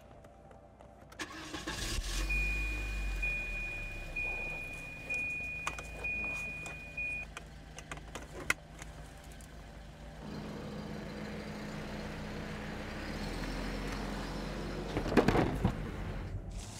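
Car engine starting about a second and a half in, then running steadily, louder in the second half. A steady high warning chime sounds for about five seconds after the start, and a sharp click comes about eight and a half seconds in, with a short clatter near the end.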